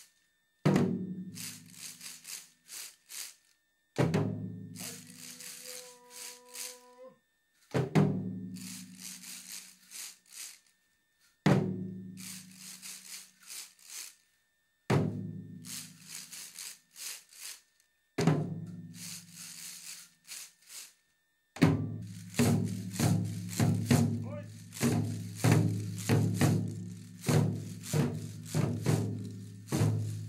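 Waist-hung dengaku drums struck once every three to four seconds, each beat ringing and trailed by the dry rattling clatter of binzasara wooden-slat clappers and scraped surizasara sticks. About 22 seconds in, the beats quicken into a steady run of about two to three strokes a second under continuous clatter.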